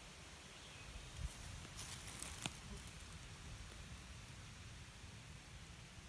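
Faint, quiet woodland ambience with a short rustle about two seconds in that ends in a small sharp click.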